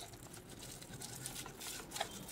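Faint rustling and crinkling from a hand handling a small paper-labelled bundle of rope incense.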